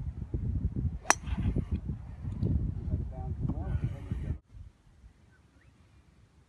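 A golf club strikes a ball off the tee with one sharp crack about a second in, over heavy wind buffeting the microphone. The wind noise cuts off suddenly a little after four seconds.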